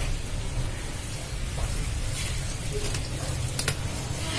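Chunks of charcoal clicking and scraping now and then as hands press them into a clay orchid pot, over a steady low rumble.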